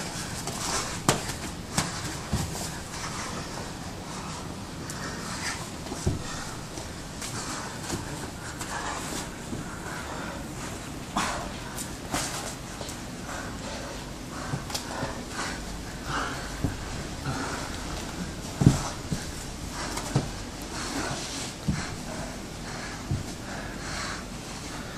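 Two men grappling on a carpeted mat: hard breathing and short exhalations, with bodies and gloves scuffing on the mat and scattered soft thumps, the sharpest about two-thirds of the way through.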